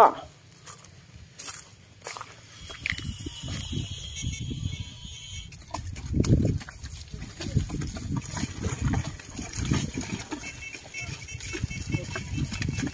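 A carabao (water buffalo) hauling a cart loaded with rice sacks through deep mud, straining against the load. It makes a run of low, irregular sounds of breath and effort that start about three seconds in, the loudest about six seconds in.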